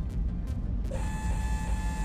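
Low rumbling soundtrack drone; about a second in, a steady, even-pitched whine joins it and holds.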